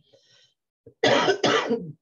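A person coughing twice in quick succession about a second in, a cough the speaker puts down to allergies.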